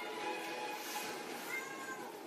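A domestic cat meowing.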